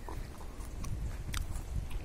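Chewing a mouthful of crisp jujube fruit: a few small crunching clicks over a low rumble.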